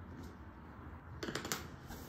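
Canvas fabric rustling as it is lifted and handled, in a few short crackly bursts in the second half.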